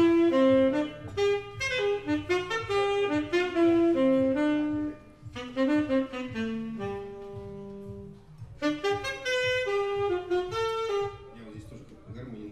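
Saxophone playing a melodic line in phrases with short pauses, including a falling run onto a long held low note, over quiet low sustained backing; the line stops about a second before the end.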